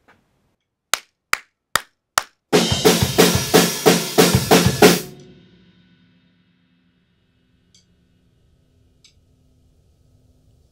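Four sharp clicks count in, then an acoustic drum kit plays loudly with snare, bass drum and cymbals for about two and a half seconds. It stops abruptly, the ring dies away, and a faint low hum remains.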